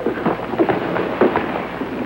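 Rapid, irregular knocks, thumps and crackles of a slapstick scuffle, dense and without a steady rhythm.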